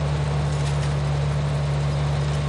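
International tractor engine running steadily, a low even drone, while pulling a grain binder through standing oats.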